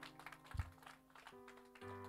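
Quiet background music of held keyboard chords that change twice, with scattered light taps over it.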